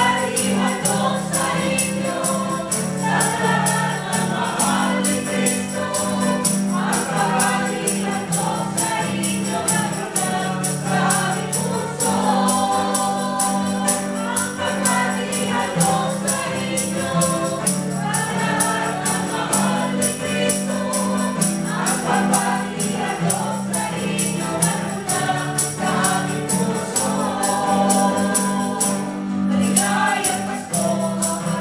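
Mixed choir singing a gospel song together, accompanied by strummed acoustic guitar and a tambourine keeping a steady beat.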